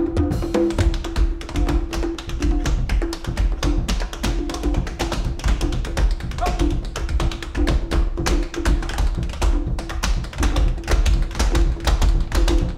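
Tap dancer's shoes tapping out a fast, dense run of taps over a hot-jazz band that keeps up a repeating low vamp and bass underneath.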